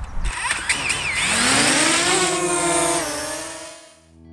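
DJI Mavic Mini drone's propellers spinning up with a high whirring whine that rises in pitch about a second in, holds steady, dips slightly near three seconds, then fades out.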